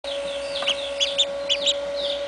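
Duckling peeping: a quick run of short, high peeps, the loudest five coming in the second half. A steady hum runs underneath.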